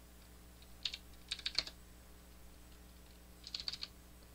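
Computer keyboard keys being typed in two short bursts of several keystrokes, the first about a second in and the second near the end, entering a number into a field.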